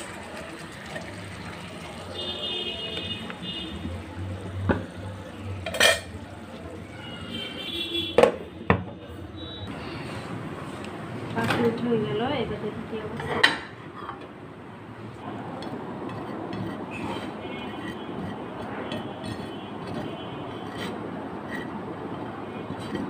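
Kitchen handling sounds: a plate and cookware clinking, with several sharp clicks and knocks, the loudest about six, eight and thirteen seconds in. Twice near the start there is a short stretch of high buzzing tone.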